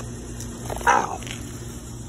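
A man's sharp yelp of pain, once, about a second in: a large crab's claw has pinched his hand.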